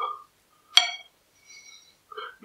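Knife and fork on a ceramic plate while cutting a piece of omelette: one sharp, ringing clink about three-quarters of a second in, then a fainter ringing scrape near the end.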